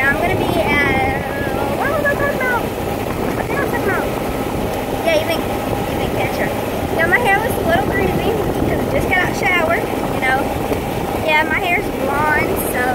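An open golf cart in motion: a steady rumble of wind buffeting the phone's microphone over the cart's running noise, with short chirps and bits of voice on top.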